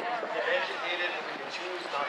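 Indistinct voices talking, a bit away from the microphone.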